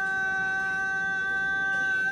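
A long, drawn-out chanted call held steady on one high note, as part of a traditional shrine-festival procession.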